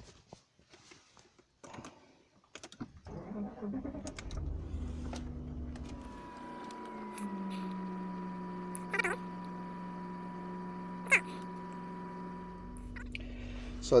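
Clicks as the Audi A8's ignition is switched on. The engine is then cranked and starts about four to five seconds in, settling into a steady idle whose low hum slowly drops in pitch. A thin steady tone and two short high blips sound over the idle.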